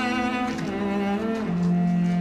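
Background score of slow bowed strings led by a cello, playing long held notes that step down in pitch twice.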